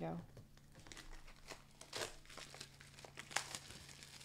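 Clear plastic wrapper on a pack of paper crinkling as it is torn open and pulled off by hand: a run of sharp, uneven crackles, with the loudest snap about three seconds in.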